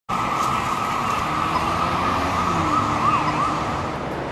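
Emergency-vehicle siren over a dense, loud rushing noise, with about three quick rising-and-falling sweeps about three quarters of the way in.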